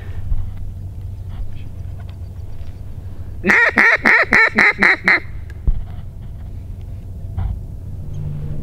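A quick run of about seven loud duck quacks in under two seconds, starting about halfway through.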